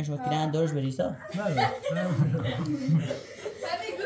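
Men talking with chuckling and short laughs mixed in.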